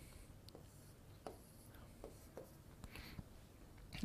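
Faint scattered taps and short strokes of a pen on an interactive touchscreen board as a diagram is drawn, over near silence.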